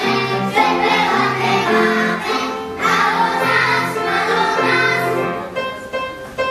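Young children's choir singing in unison over instrumental accompaniment; near the end the singing drops away.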